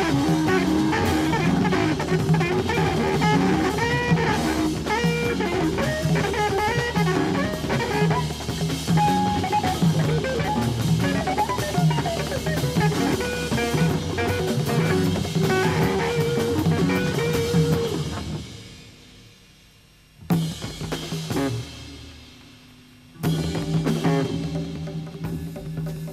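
Live electric jazz-funk band playing densely: congas, drum kit, electric guitars and electric bass. About 18 s in the music fades away; a single sudden loud hit rings out and dies down, and a few seconds later the band comes back in with held low notes.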